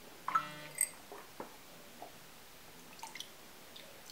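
A brief muffled voiced sound through a full mouth, then a sharp wet click and a few small drips as saliva and whitening gel dribble from the mouth into a drinking glass.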